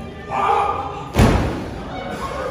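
A shout, then just over a second in one loud thud with a short ring: a wrestler's body landing on the wrestling ring's mat.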